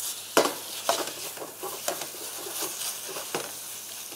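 A beef and vegetable stir-fry sizzling in a hot wok while a metal ladle and spatula toss it, the utensils clinking and scraping against the wok about six times at irregular intervals.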